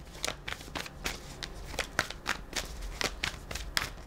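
A deck of tarot cards being shuffled by hand: a steady run of irregular card flicks and snaps, several a second.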